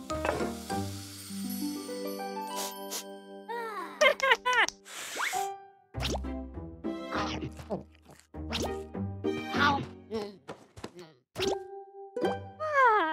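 Playful children's cartoon music with held notes, over wordless character vocalizing that slides up and down in pitch, and short comic sound effects.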